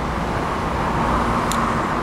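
Steady rushing background noise, like passing road traffic or an air-handling fan, that swells a little midway, with a low rumble under it and a single short click about one and a half seconds in.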